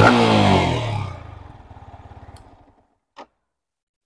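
Yamaha MT-15 V2's 155 cc liquid-cooled single-cylinder engine blipped once, the exhaust note falling in pitch back toward idle and fading out over about two and a half seconds. A brief click follows near the end.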